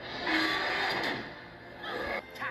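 A short non-speech vocal sound from a TV cartoon's soundtrack, played through the television's speaker. It is loudest in the first second and then fades away.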